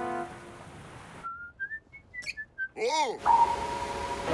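A short whistled tune of about seven quick notes, stepping up in pitch and then back down, played over a faint background after the music fades out. About three seconds in comes a brief sound that glides up and then down in pitch, and music comes back in near the end.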